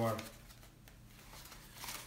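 Faint rustling and crinkling of a foam packing sheet being pulled open by hand, a little louder near the end.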